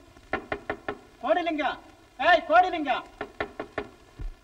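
Quick runs of knocking on a door, four or five raps at a time, twice, with drawn-out voice sounds between the two runs.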